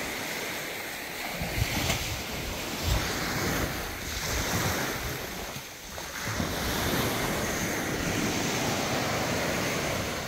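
Small waves washing onto a sandy beach in a steady, swelling wash, with wind buffeting the microphone in gusts a couple of seconds in.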